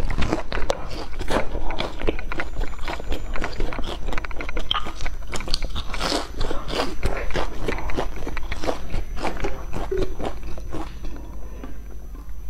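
Close-miked chewing and crunching of a crisp fried piece of food, many small crackles one after another, thinning out near the end.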